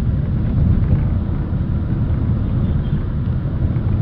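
Road and engine noise heard inside a moving car: a steady low rumble with no breaks.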